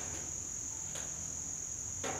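A pause in the talk, filled by a steady, unbroken high-pitched whine over a faint low hum.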